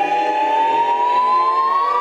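An a cappella vocal ensemble holds a chord in several parts while the top voice slides slowly up to a higher held note.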